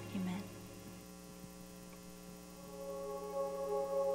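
Steady electrical hum from the church sound system, heard in a lull in the worship music. The last of the music dies away in the first second, and a soft sustained chord starts to build near the end.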